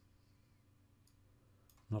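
Near silence with a couple of faint computer mouse clicks in the second half; speech begins right at the end.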